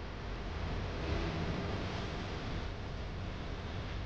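Steady whirring hiss of the International Space Station's cabin ventilation fans and equipment, continuous and even, slightly louder for a couple of seconds about a second in.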